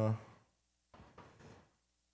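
A man's drawn-out "uh" trailing off, then a pause of near silence broken by a few faint, short knocks.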